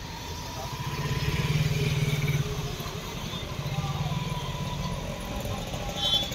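Street sound with a motorcycle engine running close by. It grows louder about a second in, eases off, and swells again around four seconds.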